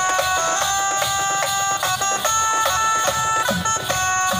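Live stage music: a harmonium playing a melody in held notes over a double-headed hand drum keeping a steady, quick beat.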